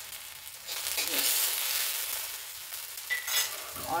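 Garlic, dried red chillies and freshly added asafoetida sizzling in hot desi ghee in a kadhai for a tadka, with a ladle stirring through it. The sizzle grows louder about a second in.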